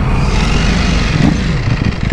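Ducati Panigale V4 S's V4 engine running under way, with wind noise over it. The revs rise briefly a little past a second in, then fall away.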